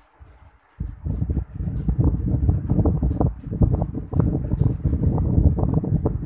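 Loud, irregular low rumbling noise buffeting the microphone, starting suddenly about a second in and continuing with crackly fluctuations.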